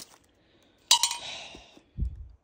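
Painted metal clothes-rack parts clinking as they are handled in their box: one sharp clink about a second in that rings briefly and fades, and a dull knock at the very end.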